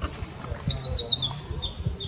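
Newborn macaque squeaking: a quick run of short, high-pitched chirping squeaks.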